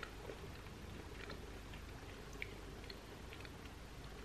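Faint mouth sounds of a person chewing a soft salted caramel chocolate truffle: a handful of small, scattered clicks over a faint steady hum.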